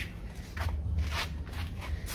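Metal karahi (wok) being handled and set onto a wood fire: a few soft scrapes and shuffles over a steady low rumble.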